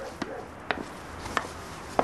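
Footsteps of slippers on a wooden floor: a few sharp taps, about two-thirds of a second apart.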